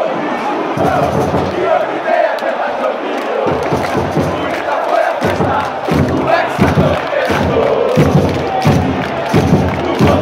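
A huge stadium crowd of football supporters singing a terrace chant together, close around the microphone. From a few seconds in, a low beat about twice a second keeps time under the singing.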